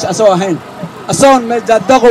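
A man speaking forcefully into a handheld microphone, with a short pause about half a second in before he carries on.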